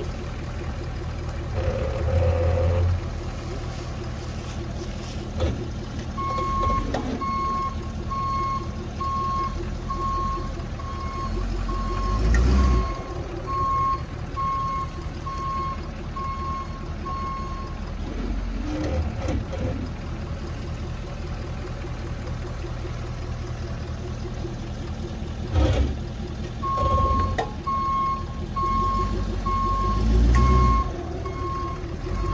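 Pickup truck running at low speed while a backup alarm beeps about once a second, the sign that the truck is reversing; the beeping stops partway through and starts again near the end. A few heavy low thumps come as the truck's wheels roll over the buried pipe in the trench.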